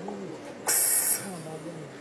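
A low, wordless murmuring voice. A loud hiss of about half a second comes about two thirds of a second in.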